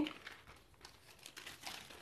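Old newspaper sheets being handled: faint crinkling and rustling of the paper with a few small crackles.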